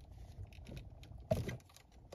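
Light plastic clicks and rattles from handling a dome light console and tugging at its plastic wiring connector, with one sharper click just over a second in.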